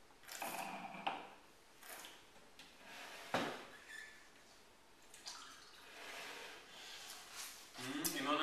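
Wine taster slurping air through a mouthful of white wine with a gurgling sound, then spitting it into a spittoon with a short sharp splash about three seconds in; soft breathy sounds follow.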